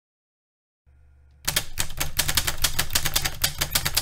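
Typewriter sound effect: a rapid, even run of key strikes, about eight a second, starting about a second and a half in, after a faint low hum.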